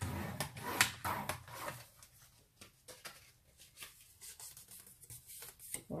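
Sheets of textured card stock being handled and creased into 1 cm folds: crisp paper rustles and scrapes, busiest in the first two seconds, then lighter occasional ticks and taps.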